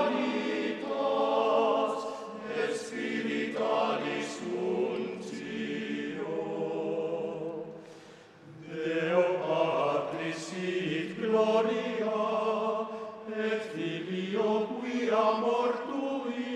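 A choir singing in slow, held phrases, with a short break between phrases about eight seconds in.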